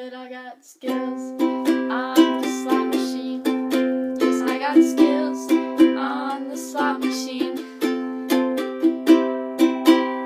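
Kala ukulele strummed in a steady rhythm, chords ringing on each stroke, with a short break just under a second in before the strumming picks up again.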